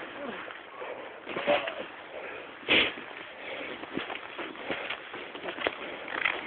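Snowboard moving through deep powder snow: uneven scraping and rustling of snow and clothing, broken by short knocks, with one louder brushing burst about three seconds in.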